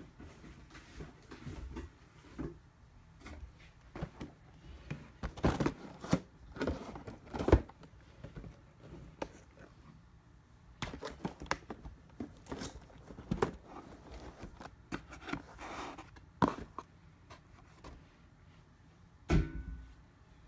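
Cardboard blaster boxes of trading cards being handled and set into a display box on a table: irregular taps, knocks and scrapes in clusters, with one louder knock near the end.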